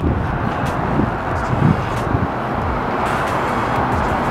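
Wind rushing over the microphone outdoors, a steady noise with irregular low rumbles from gusts buffeting the mic.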